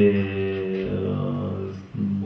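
A man's voice holding one long, level hesitation vowel, a drawn-out "deee…", for nearly two seconds, then breaking off just before the end.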